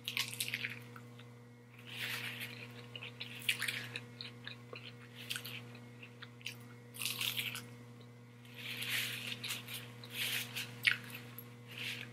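Close-up eating sounds: a bite into a lettuce-wrapped bacon burger at the start, then crisp crunching and wet chewing in bursts with short pauses between them.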